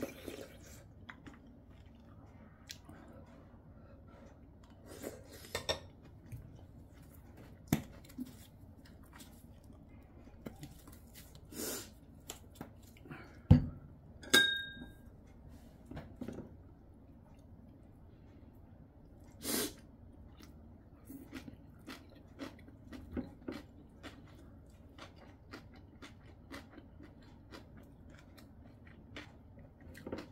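Close-up eating sounds: chewing, with scattered light clicks of metal chopsticks and a spoon against ceramic bowls. About halfway through comes a thump, followed by a brief ringing clink.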